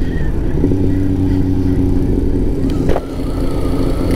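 Kawasaki Z900's inline-four engine with an aftermarket Jeskap exhaust, running at a steady cruise under way, over a constant low rumble of road and wind noise. The level drops briefly about three seconds in.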